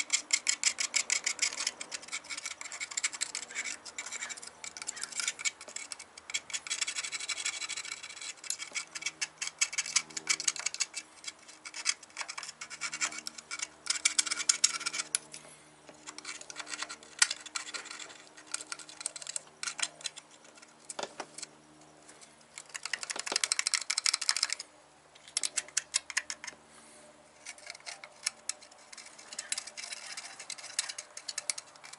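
Hand ratchet clicking rapidly in runs of a few seconds, with short pauses between, as bolts are turned on an engine.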